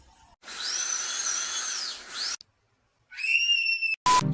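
High-speed dental drill whining for about two seconds, its pitch rising as it spins up, holding, then falling as it winds down and cuts off. After a short silence, a brief high-pitched whistle-like tone sounds near the end.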